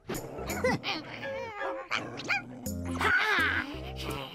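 A cartoon dog's barks and whines over background music.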